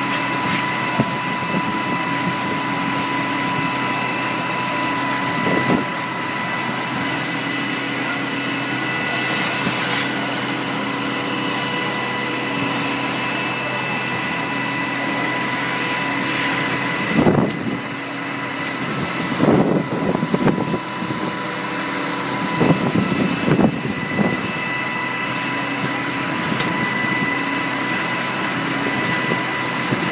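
Fire engine running steadily with a constant whine while pumping water to an aerial ladder's stream. A few short, louder irregular noises come through in the second half.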